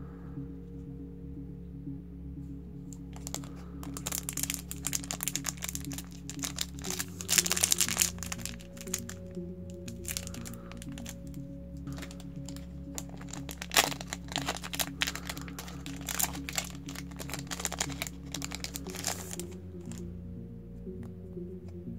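Foil booster-pack wrapper crinkling and tearing as it is opened by hand, starting about three seconds in, with the loudest crackles near the middle, over steady background music.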